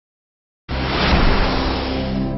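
Intro sound effect for an animated logo: silent at first, then about two-thirds of a second in a loud rushing whoosh cuts in suddenly over a steady low drone and carries on.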